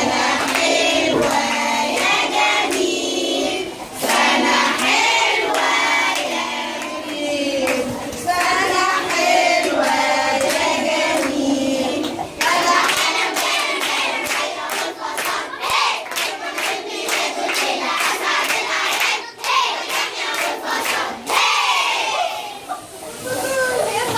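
A group of young children singing a birthday song together. About halfway through, the singing gives way to steady rhythmic hand clapping with voices over it.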